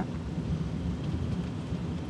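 Steady low rumble of a car driving slowly along a narrow paved lane, its engine and tyres heard from inside the cabin.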